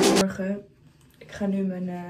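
Background music that cuts off just after the start, then a woman's short wordless vocal sound, held on one pitch for about a second.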